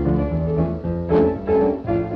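Piano music: a lively tune of chords over a walking bass line, the notes struck and fading.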